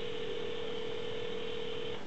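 Telephone ringback tone heard through a cordless phone's earpiece: one steady ring of about two seconds that switches on and off abruptly, the sign that the dialled line is ringing at the far end.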